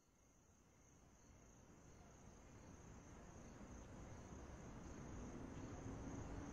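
Faint steady insect chorus, a high, even trill, with low background noise slowly fading up from about two seconds in.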